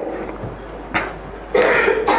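A man coughs once to clear his throat, a short burst about one and a half seconds in, after a brief quiet stretch of faint room noise.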